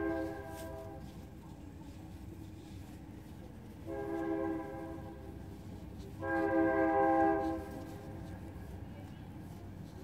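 A horn sounding a steady chord of several tones in three separate blasts: one ends about a second in, then two more of about a second each near the middle, the last the loudest. A low steady rumble lies beneath.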